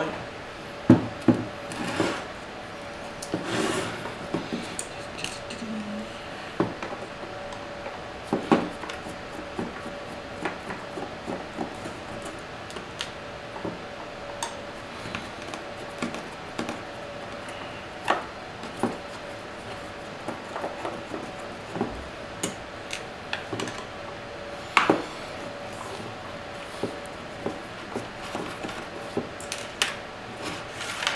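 Screwdriver turning out the small screws at the rear of an inverter's finned metal case, with scattered metal clicks and clinks as the tool meets the screw heads and the screws are set down on the desk. A faint steady hum runs underneath.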